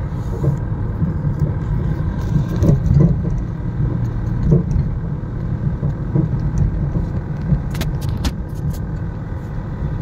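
Car driving at a steady pace, heard from inside the cabin: a continuous low rumble of engine and road noise. A few short sharp clicks come about eight seconds in.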